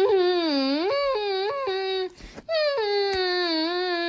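A high, wordless voice wailing in long drawn-out notes whose pitch slides up and down; it breaks off about two seconds in and starts a new long note half a second later.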